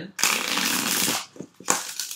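A tarot deck being riffle-shuffled by hand: a dense run of rapid card flicks lasting about a second, then a brief, shorter rustle of the cards near the end.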